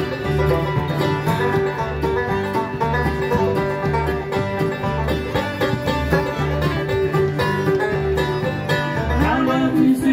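Bluegrass band playing an instrumental break: banjo, acoustic guitar and mandolin over upright bass notes on the beat, with a sliding note near the end.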